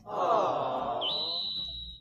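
A person's drawn-out wailing vocal sound, lasting nearly two seconds, with a thin steady high whine joining about a second in.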